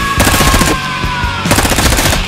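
Two rapid bursts of automatic gunfire, a dubbed sound effect, the first starting about a quarter second in and the second near the end, over background music.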